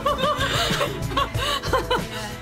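A young woman laughing in a run of short, quick laughs over background music.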